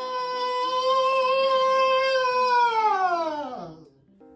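A person's long, exaggerated yawn: one high-pitched held vocal note that slides down in pitch near the end and fades out. Faint background music underneath.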